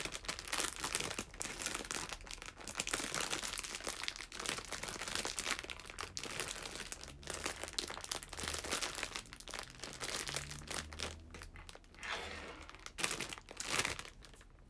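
Crinkly plastic wrapper of a bread being handled and opened, a dense crackling that stops abruptly at the end.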